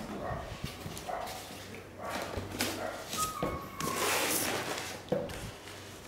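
Cardboard box being opened and its packing pulled out: irregular rustling and scraping of cardboard, foam and plastic, with louder swishes a little after two seconds and around four seconds, and a short squeak a little after three seconds.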